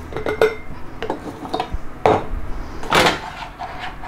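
A spoon scooping cooked vegetables out of a pan and knocking against the pan and the glass mason jars: several irregular clinks and knocks, the loudest about three seconds in.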